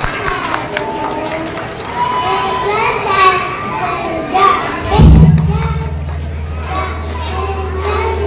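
Children's voices and audience chatter fill a large hall. About five seconds in there is a loud thump, followed by a steady low hum.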